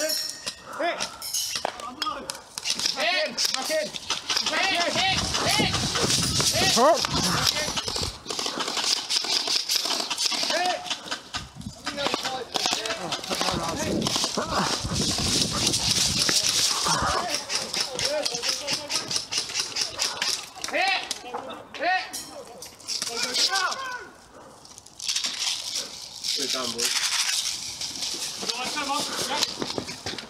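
Indistinct voices calling out almost continuously, with many short sharp clicks and rattles scattered through them; the sound dips briefly about three-quarters of the way through.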